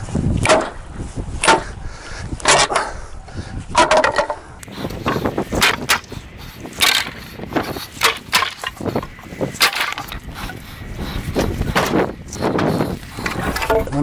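A hardwood pallet being broken apart with a hammer: a run of irregular sharp knocks of metal on wood and boards cracking loose, coming faster after about five seconds.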